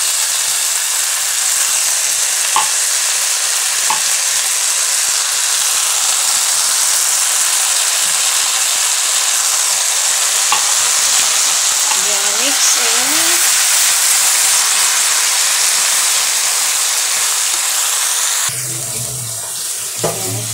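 Shredded cabbage, carrots and canned sardines in tomato sauce sizzling steadily in a hot wok as they sauté, with a few light clicks of the spatula. The sizzle cuts off abruptly near the end, leaving a low hum.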